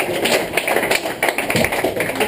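A small club audience clapping at the end of a song: dense, uneven hand claps with no music playing.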